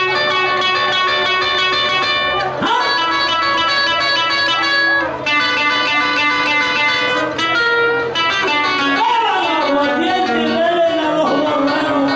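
Acoustic guitar playing an instrumental passage of held, ringing notes that change about once a second: the guitar interlude between sung verses of Panamanian décima singing.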